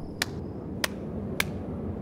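One person's hands clapping three times, slowly and evenly, about 0.6 seconds apart: a lone, unenthusiastic slow clap.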